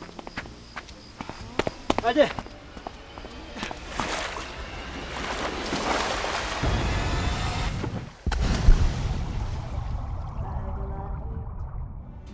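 A person plunging into a swimming pool: a heavy splash and churning water, then a sudden switch to a muffled underwater rush of bubbles that slowly fades. Earlier there are a few sharp taps and a brief vocal cry.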